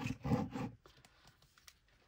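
White glue bottle being squeezed, sputtering in a few short bursts in the first second as glue and air force through its partly clogged nozzle, then a couple of faint clicks.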